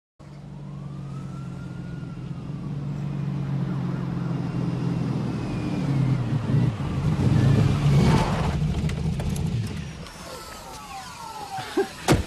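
City street traffic: a steady low engine hum with a louder rush of a passing vehicle about eight seconds in, and a siren's rising and falling wail heard softly near the start and again near the end.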